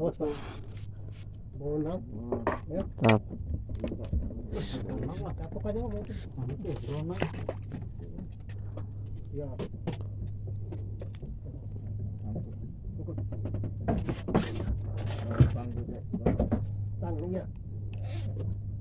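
Men's voices talking now and then over a steady low hum, with scattered small clicks and knocks.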